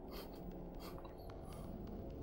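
Faint scratchy rustling in three short bursts over a low room hum.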